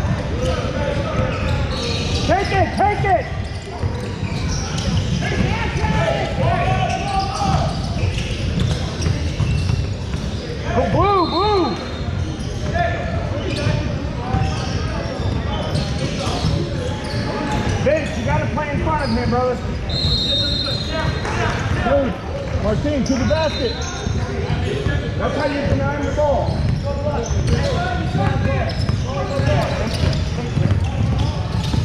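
Basketball game sounds in a large gym: a ball bouncing on the hardwood floor amid the voices of players and spectators, all echoing in the hall.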